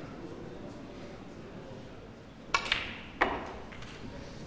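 Snooker balls clicking: a sharp crack of the cue tip on the cue ball about two and a half seconds in, then a fainter click of ball on ball about half a second later, as a long pot is played. Under them is the low steady hush of a hall.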